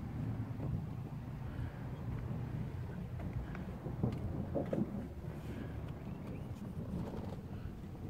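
Low, steady outdoor background rumble on a phone microphone, with a few faint knocks and bumps from handling around the middle.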